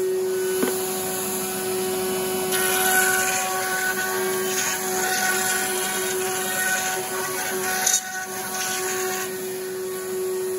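Table-mounted router running with a steady high whine while a drum shell is turned edge-down over its 45-degree cutter, skimming the bearing edge to true it. A louder cutting hiss comes in about two and a half seconds in and lasts until near the end.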